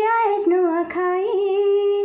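A woman singing a Sambalpuri folk song unaccompanied, in long held notes that waver gently, with short breaths between phrases.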